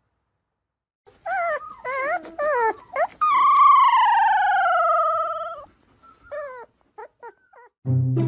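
Large husky-type dog howling and moaning as a wire head massager is run over its head: a few short wavering calls, then one long call falling in pitch for about two seconds, then a few short calls near the end.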